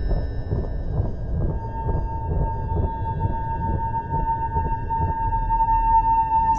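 Horror-trailer sound design: a sustained high drone tone held over a low rumbling bed, dipping briefly after the first second and then swelling back stronger.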